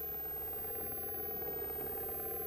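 A steady mechanical hum with an unchanging pitch, like a small motor running.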